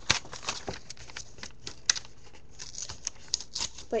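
Paper being torn and crinkled by hand, an irregular run of small crackles and snaps with a short lull in the middle.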